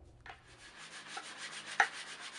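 Hand adze chopping at a rough-carved wooden djembe shell: a faint stroke about a second in, then a sharper one near the end, the start of a steady chopping rhythm.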